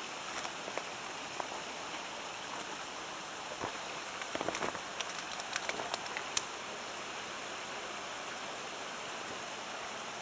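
Steady rushing of a mountain river, with a short run of footsteps crunching on the rocky trail about halfway through.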